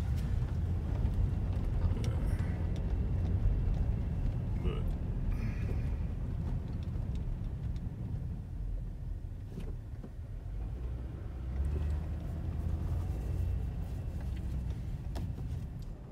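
Car interior noise while driving slowly: a steady low rumble of engine and tyres, heard from inside the cabin.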